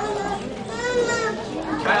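A crowd of children chattering and laughing in a large room, with one high-pitched child's voice standing out about a second in.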